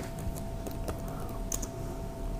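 Computer keyboard typing: a run of irregular, quick key clicks, over a faint steady hum.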